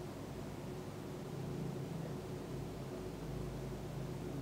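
Room tone: a steady faint hiss with a low hum, and no distinct sound events.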